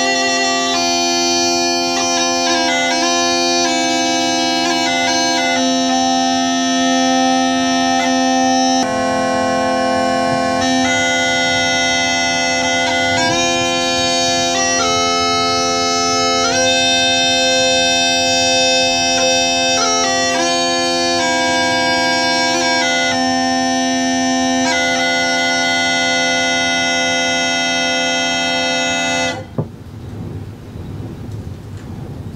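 Uilleann pipes playing a melody on the chanter over steady drones. The piping stops suddenly just before the end, giving way to a low rushing noise.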